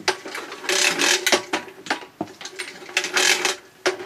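Bayco 30-foot retractable extension cord reel paying out cord in two pulls of about half a second each, its spring-loaded reel mechanism clicking as it turns.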